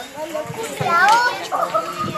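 Children and adults talking and calling out while children play, with a loud high-pitched child's voice about halfway through.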